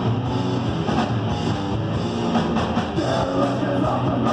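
Crust punk band playing live: distorted electric guitar, bass guitar and drum kit, dense and steady throughout.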